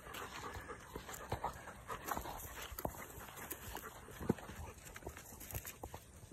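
Wet retriever puppies scrambling out of the water onto a rubber mat: scattered light taps of paws, with a few sharper knocks about four and five and a half seconds in.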